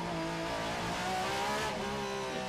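Onboard engine sound of a Porsche 911 RSR race car, its naturally aspirated flat-six pulling through a corner. The note rises a little in pitch about a second in, then holds steady as the car accelerates.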